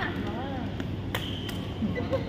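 Badminton rackets striking a shuttlecock: two sharp hits about a third of a second apart, a little past the middle. A player's voice sounds briefly at the start.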